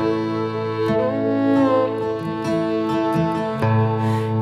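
Instrumental passage of a country/Americana song: a fiddle plays a melody that slides between notes over sustained backing chords.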